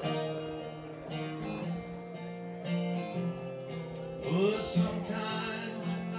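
Acoustic guitar music with singing.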